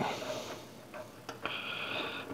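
Faint clicks and handling noise from a plastic hose connector and its threaded adapter being turned in the hand, with a faint steady hiss in the second half.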